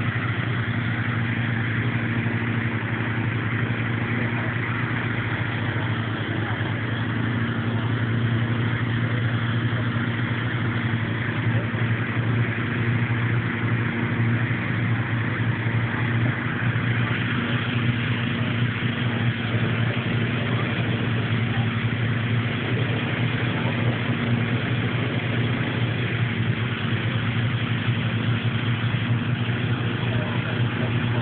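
An engine running steadily at an even low pitch, with a hiss over it.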